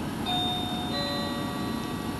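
Two sustained chime-like tones ring over a faint background hiss. The first comes in about a quarter of a second in; the second, with several pitches together, comes in about a second in and rings on steadily.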